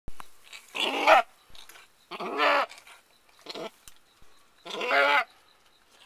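An Alpine/Nubian cross doe bleating while giving birth: four separate pitched bleats, about a second and a half apart, the third one shorter than the others.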